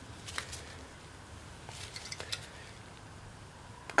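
A few faint clicks and light taps of metal tool parts, the die and clamp block of a brake-line flaring tool, being handled and fitted together.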